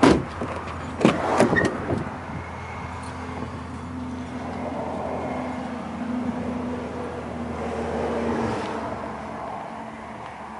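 A few clunks from a Dodge Durango's door and latch as it is opened to get into the back seat, near the start and about a second in. Then a steady low hum that stops a little before the end.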